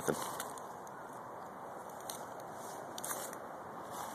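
Steady distant hum of highway traffic from Interstate 285, with a few faint crackles and rustles of footsteps through leaf litter and undergrowth.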